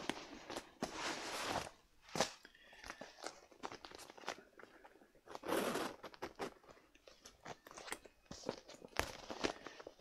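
A soft quilted leather clutch being handled, opened and folded: quiet rustling and creasing of the leather with scattered small clicks, coming in several short spells.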